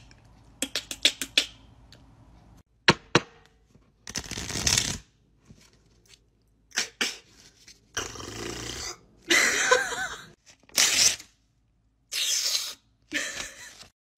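A quick run of sharp clicks from a handheld fidget pad's buttons, then two single clicks. After that comes a string of short, rough hissing bursts, each under a second, with pauses between them.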